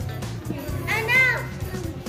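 Children's voices and background chatter with music underneath; about a second in, a child gives a short, high-pitched exclamation.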